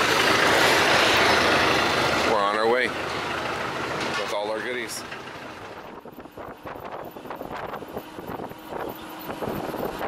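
A vehicle engine idling close by with people's voices over it. After a cut about three seconds in, this gives way to quieter road noise and wind on the microphone from a moving vehicle.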